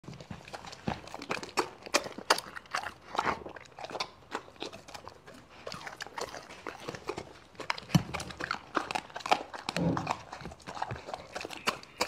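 A Doberman chewing and biting raw meat close to the microphone: a dense, irregular run of jaw and lip smacks and clicks.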